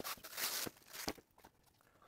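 Clear plastic wrapping rustling and crinkling as a nylon belt is pulled out of it by hand, with one short click about a second in.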